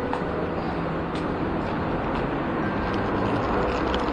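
Steady background rumble and hiss of a railway station entrance hall, with a faint low hum and a few faint clicks.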